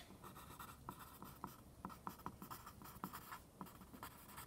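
Pencil writing on lined notebook paper: faint scratching in short strokes as a word is written.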